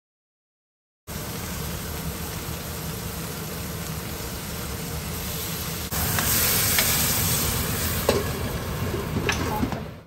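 Masala cubes sizzling in hot oil in a stainless steel pan, starting about a second in. About six seconds in the sizzle gets louder as a ladle stirs the pan, with a few clicks of the ladle against the pan near the end.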